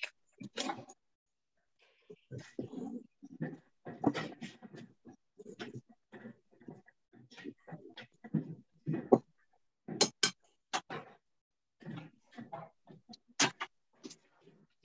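Wire whisk stirring flour and baking powder in a glass bowl: irregular short scrapes and taps against the glass, each cut off abruptly as heard over a video call.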